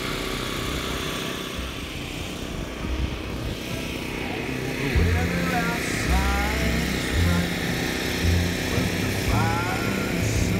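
Low rumble of a slow-moving car heard from inside the cabin. About five seconds in, a song with a steady bass line and singing comes in over it.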